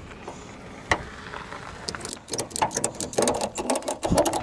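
Ratchet tie-down strap being cranked tight: one sharp click about a second in, then quick runs of clicks from the pawl from about two seconds in.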